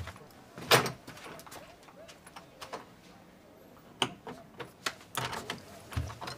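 Interior door sounds: a sharp thud about a second in, then a quiet stretch and a few soft clicks near the end.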